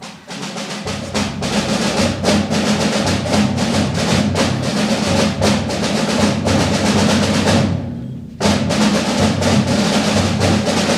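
Middle-school concert band playing, with drums and other percussion striking throughout over the lower instruments. The music starts abruptly, drops away briefly about eight seconds in, then comes back in sharply.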